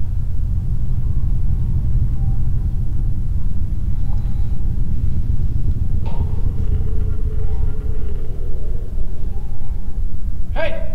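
Horror-film soundtrack: a loud, steady, low rumbling drone, with a faint wavering tone coming in about six seconds in.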